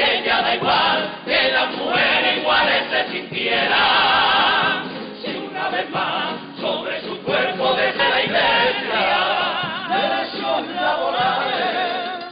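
Carnival comparsa, a chorus of men's voices, singing a pasodoble loudly in harmony, with long held notes that waver in vibrato.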